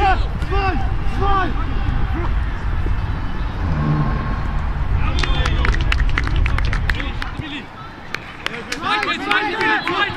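Wind rumbling on the microphone under distant shouting players, with a quick run of sharp clicks about five seconds in. The rumble stops suddenly after about seven seconds, and near the end players shout calls to one another.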